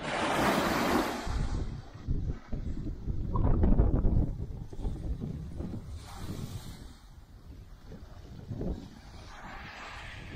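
Wind buffeting the microphone in uneven gusts, the heaviest about a second in and again around the middle, over small waves washing against a rocky shore.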